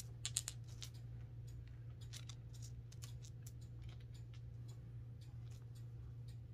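Faint, scattered light clicks of small gemstones being sifted by hand, the stones tapping against one another, with a few sharper clicks in the first second, over a steady low hum.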